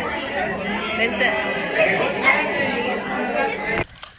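Several people talking at once, an overlapping chatter of voices with no one voice standing out; it cuts off suddenly just before the end.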